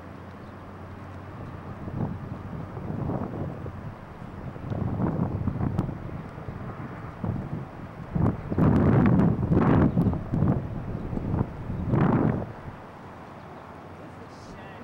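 Wind buffeting a camcorder microphone outdoors: irregular gusty rumbles that build from about two seconds in, are strongest between about eight and twelve seconds, then die back to a low steady hiss.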